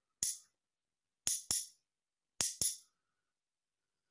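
Two metal spoons struck together, tapping out a rhythm of five bright clinks: one on its own, then two quick pairs.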